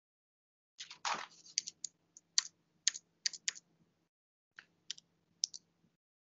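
Computer keys being tapped: an irregular run of about a dozen sharp clicks, starting about a second in, with a faint low hum beneath them, picked up by a video-call microphone.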